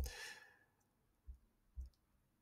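A short, breathy sigh, then two faint computer-mouse clicks in the second half.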